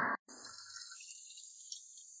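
A loud screaming-marmot meme scream cuts off suddenly a moment in. After it comes a faint high hiss of a thin stream of tap water running into a stainless steel sink, with a few light ticks.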